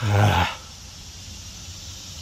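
A man's short, low groan lasting about half a second, then only faint background.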